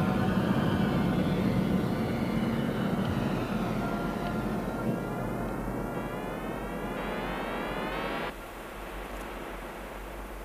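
Electronic soundtrack: a dense, low rumbling drone. About halfway through, a rising tone joins it, then everything cuts off suddenly, leaving a fainter hum.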